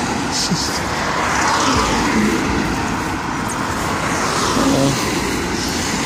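Steady road traffic noise, with a car passing by about two seconds in.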